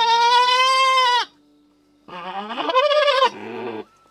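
Goat screaming: two long, loud bleats, the second beginning about two seconds in with a rising start and trailing off lower near its end.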